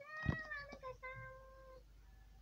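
A cat meowing twice: a first meow that rises then falls, with a soft knock early in it, and a second meow held at a steady pitch; heard played back through computer speakers.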